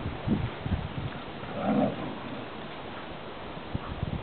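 Two silken windhounds play-fighting, with a short growl from one of the dogs a little under two seconds in, the loudest moment, among scuffling and a few low thuds.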